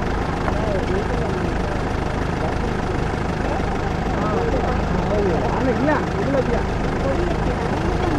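A vehicle engine idling with a steady low rumble, with faint voices talking quietly over it.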